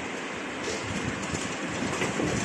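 Bottle-filling line's slat-chain conveyor running, carrying small bottles. There is a steady mechanical hiss with a fast, irregular rattle of knocks that gets louder about halfway through.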